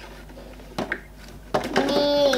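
Hard plastic toy play set being handled: a light click about a second in, with soft knocking around it. A voice starts near the end.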